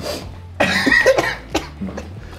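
A man coughing, a few rough coughs in quick succession from about half a second in.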